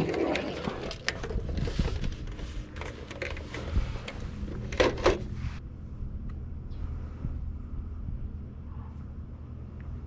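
Rustling and light knocks as a DVD player and table items are handled, with a body-worn camera rubbing, over a steady low hum; the handling stops about five and a half seconds in and only the low hum remains.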